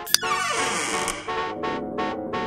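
Electronic music with chopped, pulsing chords. Just after the start a sharp click sets off a falling pitch sweep, a squeaky glide downward over about a second. The pulsing chords then resume.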